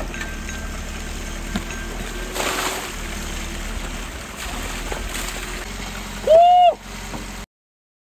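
Meltwater gurgling through a trench freshly cut in snow and mud as a shovel breaks it through, over a steady low rumble. About six seconds in a person lets out one short, loud whoop that rises and falls, and the sound cuts off suddenly just before the end.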